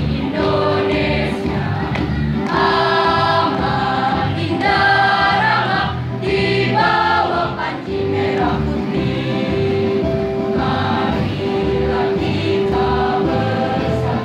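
School choir singing a regional march, accompanied by an electronic keyboard holding long notes underneath.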